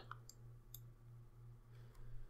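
Near silence: a low steady hum with a few faint clicks in the first second.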